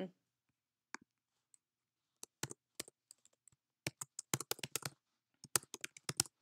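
Typing on a computer keyboard: a few scattered key clicks, then two quick runs of keystrokes in the second half.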